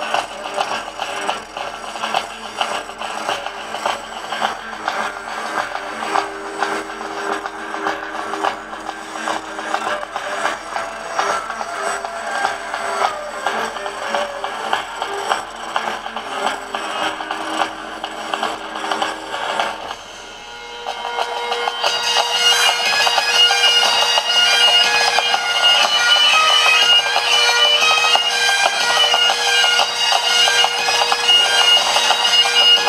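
Music with a steady beat for about twenty seconds, then a short drop in level, and bagpipes strike up, a steady drone under the melody, louder than the music before.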